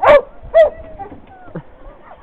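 A dog barking twice, about half a second apart, then giving quieter short whines that glide in pitch: frustrated calls at a fence she cannot get past to the water beyond it.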